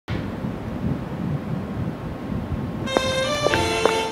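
Low, rumbling city street noise for about three seconds, then background music starts with a few plucked notes.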